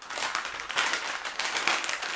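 Crinkly snack bag crackling steadily as it is gripped and turned over in the hands.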